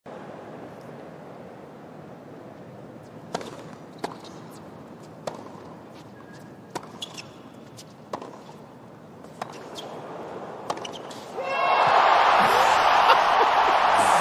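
Tennis rally: sharp pops of rackets striking the ball and the ball bouncing on the hard court, roughly one a second, over the low hush of a quiet stadium crowd. About eleven seconds in, the crowd erupts into loud cheering and applause as the point is won.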